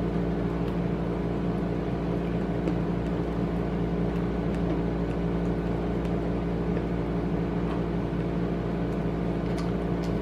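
Steady machine hum made of several fixed low tones, holding at an even level throughout.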